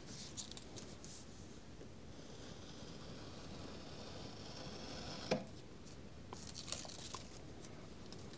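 Soft handling of a paper sheet on a wooden bench: faint rustling as it is shifted, a single light tap about five seconds in, and a short run of small clicks and rustles a second later, over quiet room tone.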